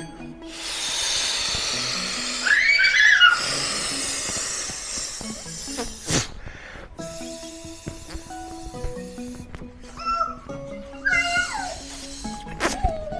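Long breaths blown by mouth into the valve of a small vinyl inflatable toy, two drawn-out rushes of air. A toddler's short high squeals come about two and a half seconds in and again near the end, over background music.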